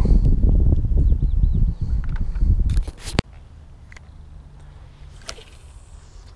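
Loud, low rubbing and handling noise right on the camera's microphone for about three seconds, ending in a single sharp click. After that there is only quiet outdoor background.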